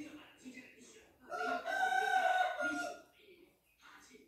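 A rooster crowing once: a single long call starting just over a second in and lasting nearly two seconds.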